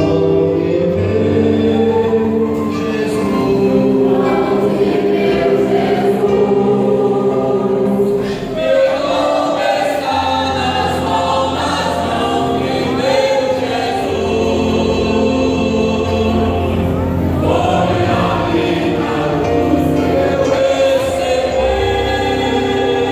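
Mixed choir of men's and women's voices singing in sustained chords, with a brief break between phrases about eight seconds in.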